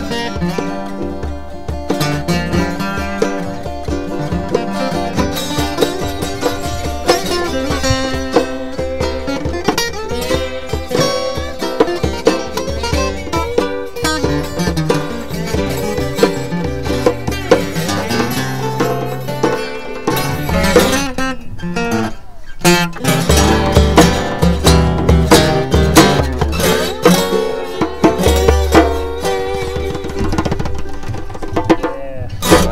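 Saga acoustic guitars playing an instrumental blues, one of them with a bottleneck slide, over a hand drum beat. The beat dips briefly a little past twenty seconds in, then comes back heavier.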